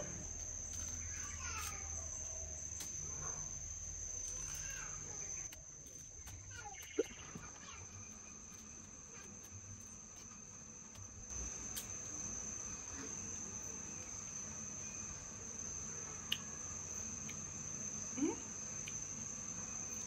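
Insects chirring in a steady, unbroken high-pitched trill, with a few faint sharp clicks as the hard, scaly skin of a snake fruit is peeled by hand.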